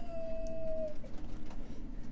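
A woman's drawn-out "ooooh" of delight, held on one slightly rising note, cutting off about a second in. After it come a few faint crinkles as the plastic-wrapped hotel slippers are handled.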